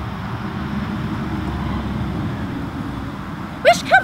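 Steady outdoor background rumble and hiss. Near the end come two short, high-pitched calls that rise and fall in pitch.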